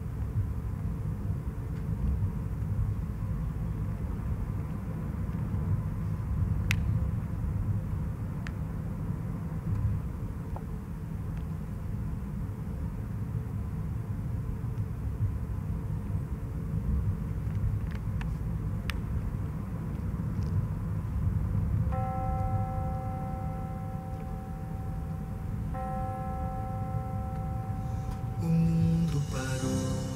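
A low, steady rumble with a few faint clicks, the ambient sound bed of a music video's intro. About two-thirds of the way in, held synth-like notes come in, and the music swells just before the end as the song is about to begin.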